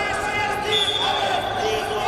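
Referee's whistle blown once, one steady high note of just over a second that restarts the wrestling bout, over a background of voices in the hall.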